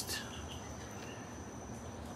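Faint background ambience with a steady high-pitched insect trill over a low, even hum.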